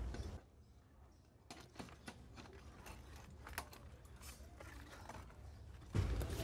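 Faint, irregular metallic clicks and scraping of tie wire being twisted around rebar crossings with a hand hook tool, starting about a second and a half in.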